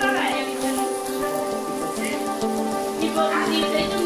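Meat sizzling and fat crackling on a charcoal grill, a steady hiss dotted with small pops, under background music with held notes.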